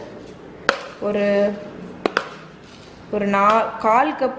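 Three short, sharp knocks on a small stainless steel saucepan as sugar is tipped in from a plastic container onto jam, the last two close together about two seconds in.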